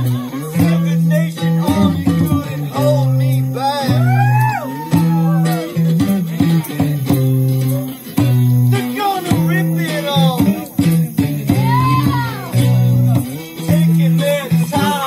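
A small live band playing: electric guitar and bass guitar in a steady, repeating groove, the bass stepping between a few low held notes, with bending melodic lines above.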